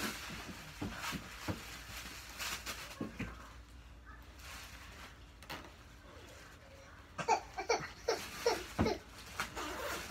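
Quiet rustling and scattered light clicks of a fabric vest being handled and fastened at the front. A few short voice sounds come in a cluster near the end.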